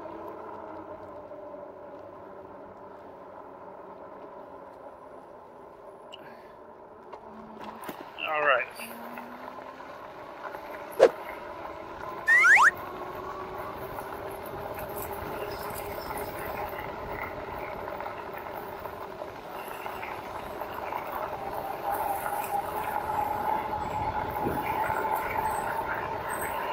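Electric bike's rear hub motor whining steadily under tyre noise on a dirt trail, getting louder and a little higher in pitch as the bike speeds up near the end. There is one sharp knock about eleven seconds in.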